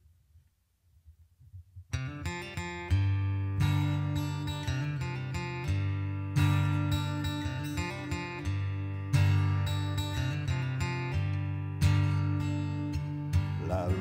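Taylor acoustic guitar starting a strummed, picked song intro about two seconds in, with a strong accented strum every few seconds and the chords ringing on between them. A man's singing voice comes in right at the end.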